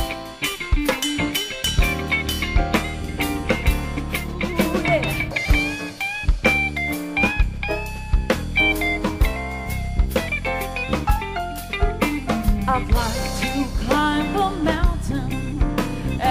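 Jazz band of drum kit, bass, guitar and piano playing an instrumental passage with a steady beat.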